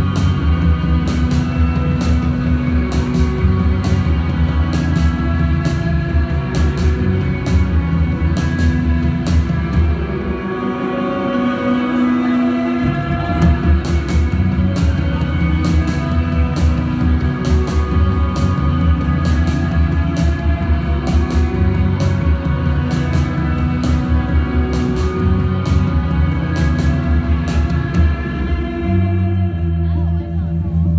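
Live psychedelic rock band playing an instrumental passage with no vocals: electric guitars and bass over a steady drum beat. The bass drops out for about two seconds about a third of the way in, then comes back. Recorded loud on a phone's microphone from the crowd.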